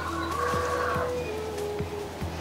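A rooster crowing once, the call ending about a second in, over background music with sustained notes.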